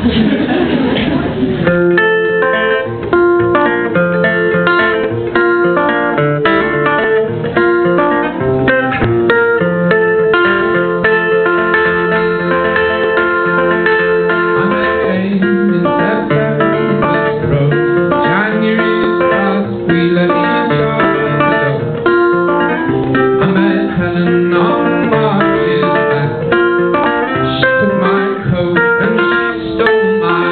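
Solo acoustic guitar played live, a picked pattern of ringing notes starting about two seconds in and running on steadily.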